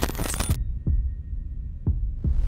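Intro sound effect for a logo animation: a wash of noise cuts off about half a second in, then two deep, heartbeat-like thumps about a second apart sound over a low hum.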